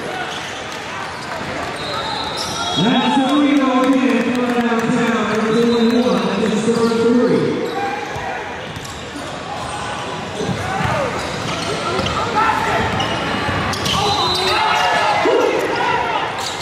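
Live gym audio of a basketball game: a ball bouncing on the hardwood court amid players' and spectators' voices calling out, with echo from the large hall.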